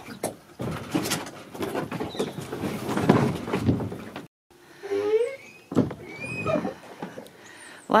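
Knocks, bumps and scraping against a hollow plastic pedal boat as a man climbs aboard, busy and clattery for about four seconds; the sound then cuts out briefly and faint voices follow.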